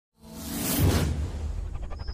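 Logo-intro whoosh sound effect swelling up to a peak about a second in over a deep bass rumble, with a fast fluttering shimmer starting near the end.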